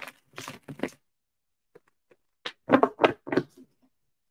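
Tarot cards being shuffled by hand: two short clusters of papery riffles and taps, one at the start and a louder one from about two and a half seconds in.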